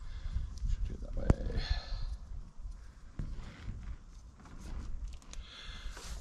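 Wind buffeting the microphone as a low, uneven rumble, with faint rustling and a single sharp click about a second in.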